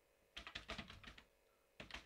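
Faint typing on a computer keyboard: a quick run of keystrokes, a short pause, then a couple more keystrokes near the end.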